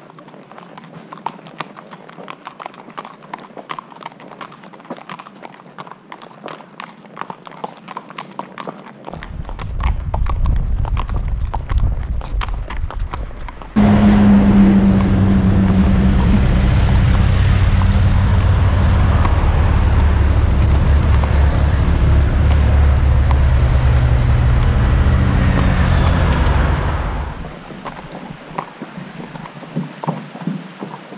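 Haflinger horses walking, their hooves clip-clopping in an even rhythm. From about nine seconds a loud, low engine drone of passing road traffic comes in and swells into a steady hum about five seconds later. It fades out near the end, leaving the hoofbeats again.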